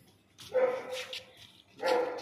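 A dog barking twice, once about half a second in and again near the end.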